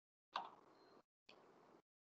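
Near silence with a single faint, brief click about a third of a second in.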